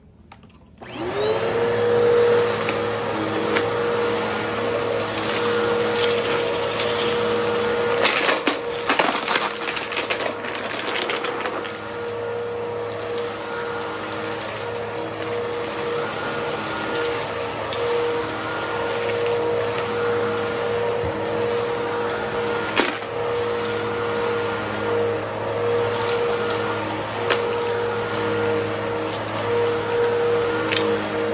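Upright vacuum cleaner switched on about a second in, its motor whining up to speed and then running steadily as it is pushed over a rug. Crackles of debris being sucked up come several times, most thickly around the middle.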